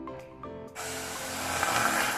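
Water poured from a mug onto sugar in a stainless steel pot: a rushing splash that starts about three quarters of a second in and grows louder toward the end.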